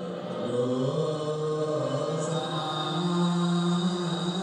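A man's voice chanting slowly in long held notes, stepping gently between pitches, as in Ethiopian Orthodox liturgical chant.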